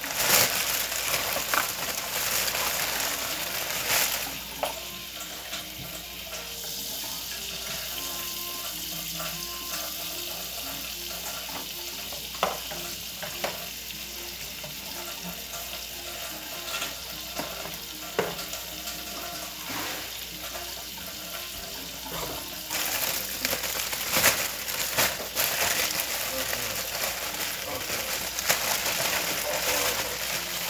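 Tortilla frying in butter in a pan, a steady sizzle, with a few sharp clicks scattered through.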